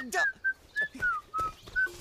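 A man whistling a tune through his lips in a string of short, clear notes, several of them sliding down in pitch.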